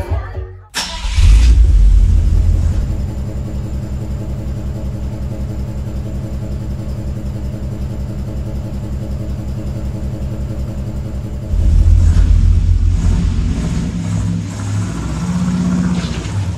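Car engine coming in abruptly and revving about a second in, settling into a steady idle, then revved again about twelve seconds in.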